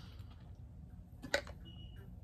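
Quiet room with one sharp click a little past the middle and a brief, faint high-pitched beep near the end.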